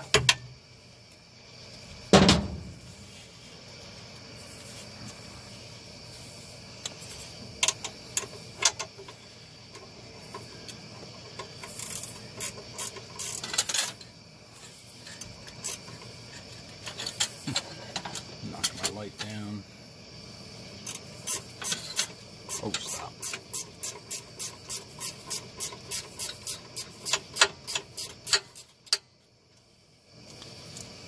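Hand ratchet turning out a power steering rack mounting bolt: a sharp metal knock about two seconds in, scattered clicks, then an even run of ratchet clicks, about three a second, near the end.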